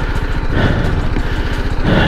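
A BMW G 310 GS's single-cylinder engine running steadily as the motorcycle is ridden slowly along a rutted dirt trail.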